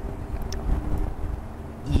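Low steady outdoor background rumble with a faint hum, no distinct event.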